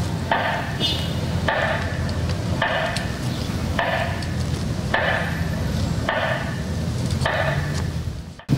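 Slow, regular metronome beat over a public-address system, about one beat a second, marking a minute of silence, with a steady low hum underneath.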